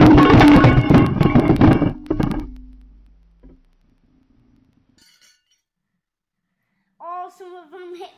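A handful of metal spoons dropped into a glass bowl of water, splashing and clattering against the glass as they sink. The clinking is dense and loud at first and dies away after about two and a half seconds. A short voice comes in near the end.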